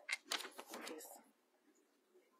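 Close handling noise near the microphone: a burst of rustling and clicks lasting about a second.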